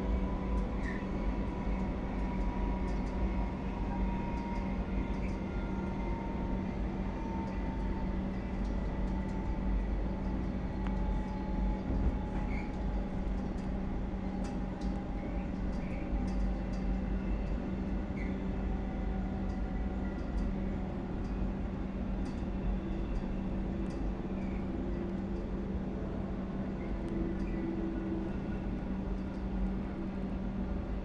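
Comeng electric multiple unit heard from inside the carriage while running: a steady rumble and hum with a motor whine that falls slowly in pitch as the train loses speed, and occasional faint clicks.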